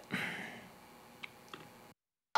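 A man's short breathy laugh, fading out, followed by two faint clicks of a computer mouse a moment apart.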